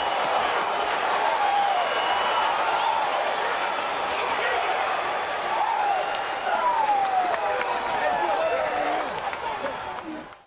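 Baseball stadium crowd noise in a TV broadcast: a steady din of many voices with scattered individual shouts.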